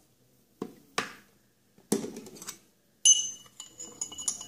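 A few light knocks, then a metal teaspoon strikes a drinking glass about three seconds in, with a clear ringing clink and lighter clinks after it as the spoon goes in to stir the vinegar and baking-soda mixture.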